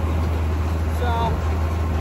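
Tractor engine running steadily under load, a low even drone.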